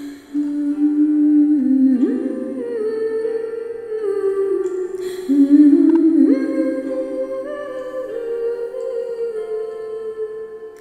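Music: a slow wordless melody hummed by a voice, long held notes that step and sometimes slide up from one pitch to the next.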